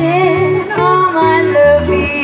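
A woman singing a melody with an acoustic guitar accompanying her, live.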